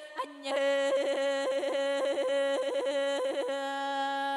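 A solo voice singing traditional Sakha song, breaking rapidly and repeatedly between a low and a high register in yodel-like throat ornaments (kylyhakh), about five flips a second. There is a short breath at the start, and the singing ends on a held note.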